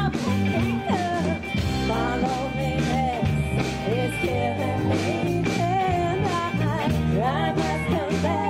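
A live rock band playing: a woman singing lead over electric guitars, bass and drums.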